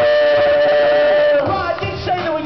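Live pop song sung by a group of performers over a backing track, holding a long final note that breaks off about a second and a half in.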